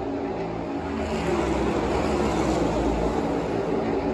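The V8 engines of a pack of NASCAR Cup Series cars running past the grandstand. They grow louder about a second in, then ease off near the end as the field goes by.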